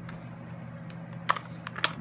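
A few light clicks and taps of a stamp block being picked up and handled on a tabletop, two of them sharper in the second half, over a low steady hum.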